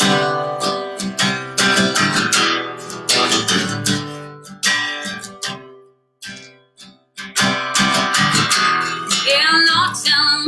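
Acoustic guitar strummed as the opening of a country song. The chords die away and break off about six seconds in, then the strumming starts again about a second later.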